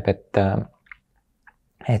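Speech with a pause: a short spoken syllable, about a second of near quiet with a few faint mouth clicks, then the voice resumes near the end.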